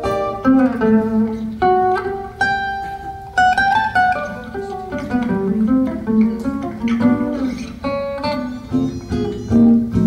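Acoustic guitar music: a run of plucked melody notes ringing over a lower line of bass notes.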